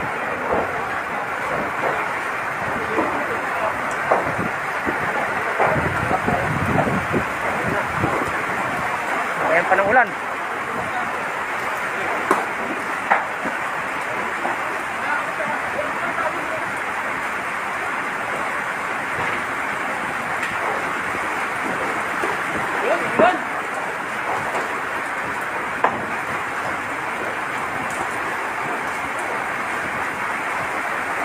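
Steady rushing noise at a building fire, with scattered short distant shouts.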